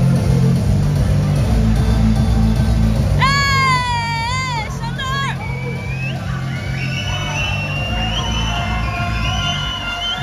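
Music with a heavy, steady bass beat, with spectators in a swimming hall cheering on a relay race over it. A long, high, wavering shout comes about three seconds in, and from about six seconds on many voices shout and cheer over one another.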